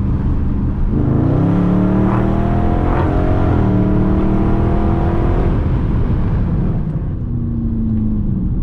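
2020 Dodge Charger Scat Pack's 392 HEMI V8 under full throttle, heard through an open window from inside the car. The revs climb, drop sharply once as the automatic shifts up about three and a half seconds in, climb again, then fall away as the throttle is released after about six seconds.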